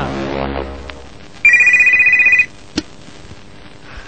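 An electronic telephone rings once, a loud high warbling trill about a second long, followed by a single sharp click. It is heard on an off-air radio recording.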